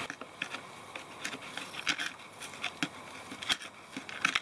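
A thin metal tool scraping and picking at a day-old blob of thinset mortar bonded to a keyed-in Kerdi board. It makes a string of short, scratchy clicks and scrapes, spaced irregularly about every half second to second.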